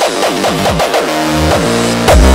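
Hardcore electronic music in a break: the kick drum is out, and a quick run of synth notes, each bending down in pitch, gives way to held synth tones.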